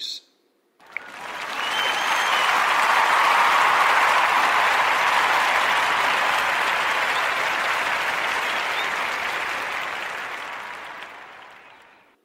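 Audience applause: it comes in about a second in, swells, then slowly fades out near the end.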